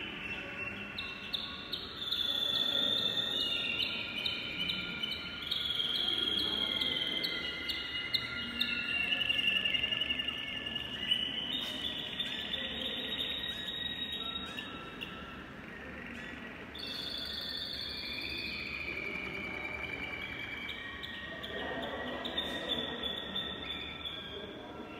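Domestic canaries singing, a run of rolling trills, each held at a steady pitch before jumping to another, with a brief lull about two-thirds of the way through.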